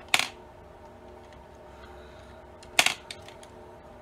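Makeup brushes clacking as they are handled while one is picked out: two short, sharp clatters about two and a half seconds apart, with a few faint ticks after the second.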